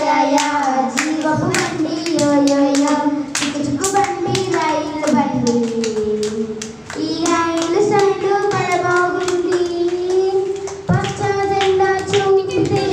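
A group of children singing a Sunday school song together in unison, clapping their hands in time, with a short break between lines about seven seconds in.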